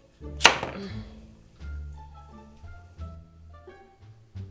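A chef's knife chops through a butternut squash and hits the wooden cutting board with one sharp knock about half a second in, followed by a few faint knocks, over background music.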